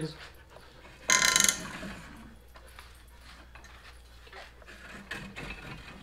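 Hinged wooden axe rack being swung out from the wall, with a short, loud rattle about a second in, then faint knocks and clicks of the rack and axes being handled.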